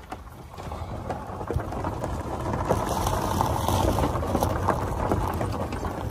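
A small car rolling over a rough dirt track: a steady rumble with many small rattles and knocks, getting louder about a second in.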